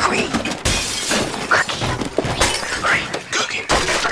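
A fight in full swing: a series of crashes and smashing, with things breaking and shattering, mixed with shouts and yells.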